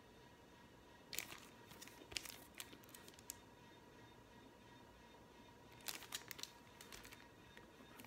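Plastic outer sleeve of a vinyl LP crinkling as the record is handled and turned over. The crinkle comes in two faint spells of crackle, starting about a second in and again near six seconds.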